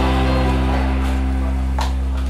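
A live band's closing chord held and ringing out: acoustic guitar, bass guitar and bowed violin sustaining one chord, with a sharp struck hit near the end.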